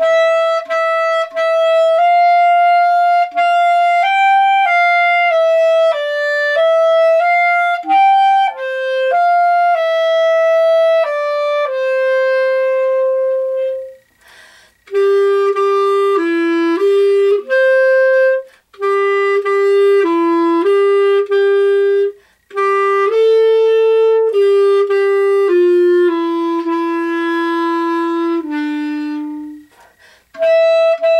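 A solo clarinet playing a slow melody with slurred passages, note after note with a few short pauses; the second half of the tune sits lower in pitch, ending on a low held note.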